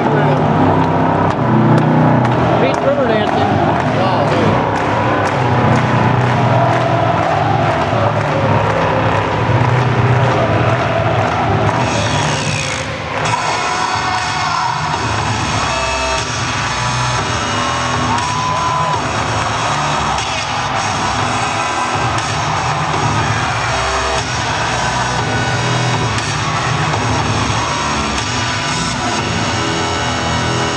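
Soundtrack of an arena floor projection show played loud over the public address system: music mixed with sound effects and crowd noise. About twelve seconds in, the soundtrack changes from a fast pulsing texture to steadier held tones.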